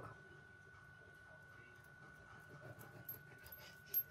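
Quiet kitchen with a faint steady high tone and a few light ticks in the second half, the clearest about three seconds in and just before the end: a knife slicing a small tomato thinly on a wooden cutting board.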